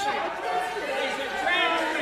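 Several voices talking over one another in a large hall: members calling out and chattering across the chamber.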